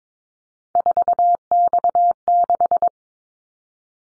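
A Morse code tone, a single steady beep keyed on and off at 22 words per minute, sending the callsign prefix 4X6 (....- -..- -....). It starts under a second in and lasts about two seconds.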